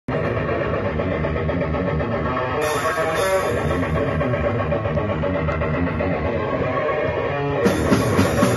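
Death metal band playing live: electric guitar, bass guitar and drum kit together. Near the end, harder, evenly spaced drum and cymbal hits come in.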